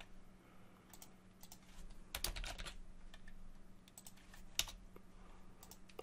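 Computer keyboard keystrokes, scattered and irregular, with a quick cluster about two seconds in and a sharper single click about four and a half seconds in. A faint steady low hum sits under them.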